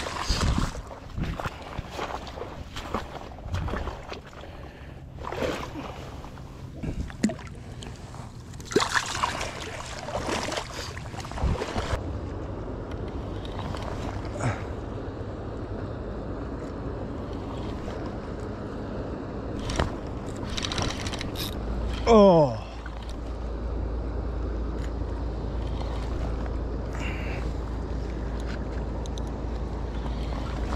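Water lapping and sloshing against shore rocks, with scattered knocks and the handling of a spinning rod and reel being cranked. About two-thirds of the way in there is one loud falling tone, the loudest sound here, and from then on a steady low rumble of wind on the microphone.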